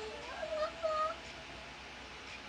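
A young boy singing, with two short held notes about half a second to a second in.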